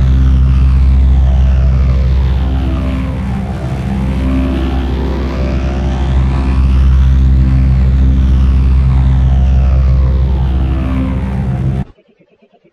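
Very loud, heavily distorted, bass-heavy edited audio put through a sweeping flanger-type effect, its pitch pattern rising and falling slowly twice. It cuts off suddenly near the end.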